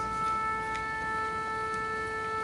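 A single wind instrument holding one steady note, an A near 440 Hz, the pitch an orchestra tunes to.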